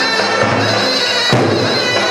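Live Turkish folk dance music for a halay line dance: a held wind-instrument melody over a steady drum beat, with one sharp hit about a second and a half in.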